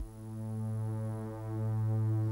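A low, steady droning hum, most likely a sustained bass drone from the drama's suspense background score.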